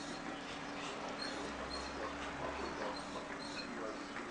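German shepherd bitch in labour panting, with a series of short, high-pitched whimpers.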